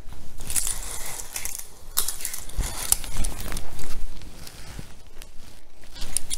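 A shower curtain hook being worked onto a tension rod and closed: scattered clicks and small rattles, with the curtain rustling and a few dull bumps of the rod being handled.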